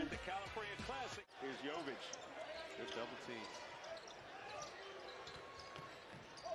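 Basketball dribbling on a hardwood arena court, heard through the game broadcast, under arena crowd noise and faint commentary. The sound cuts out for an instant just over a second in, at an edit between highlight clips.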